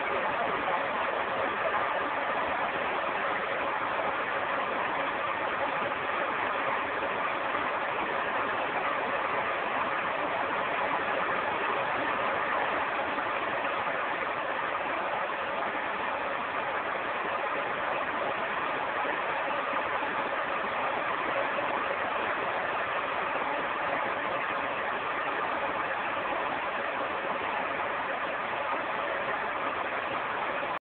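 Steady hiss of static from a Hitachi P-32 portable black-and-white TV's loudspeaker, tuned to a distant Italian VHF channel received by sporadic E, with no programme sound coming through.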